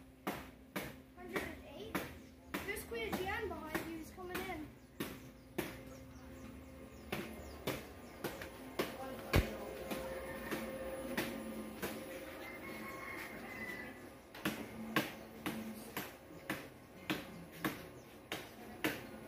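A series of sharp clicks or knocks, one or two a second and sparser in the middle, over a steady low hum, with faint voices in the first few seconds.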